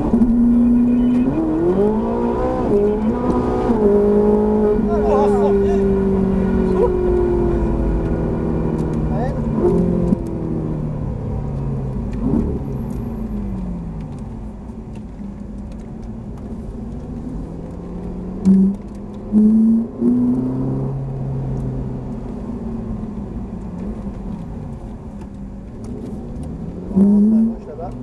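Ferrari 458 Italia's 4.5-litre V8 heard from inside the cabin: the engine note climbs under full throttle, then falls away over several seconds as the car slows, with short rises on the downshifts. After that it runs at a lower, steadier note, broken by a few brief loud bursts.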